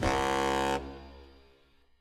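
Closing brass hit of a fanfare-style music track: one held blast, under a second long, that then dies away into silence.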